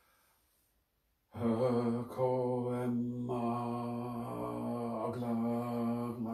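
A person's voice vibrating a divine name in ritual chant: one long, intoned call held on a steady low pitch for over five seconds, starting about a second in, with a short break near the start and the vowel shifting as the syllables change.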